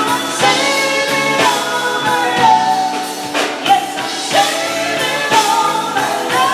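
A woman singing into a microphone with a live band of electric guitar, drum kit and keyboards backing her, the drum hits falling in a steady beat.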